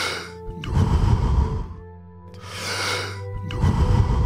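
Deep, forceful breaths drawn in and let out, about two full breaths in a steady rhythm, as in the fast deep-breathing phase of a Wim Hof-style power-breathing round. A sustained ambient music drone plays underneath.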